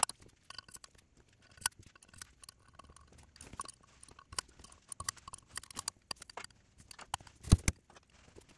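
Light metallic clicks and taps as exhaust valves are handled and slid into the valve guides of a Honda B18C5 Type R aluminium cylinder head. Near the end there is one heavier thump as the head is turned over and set down.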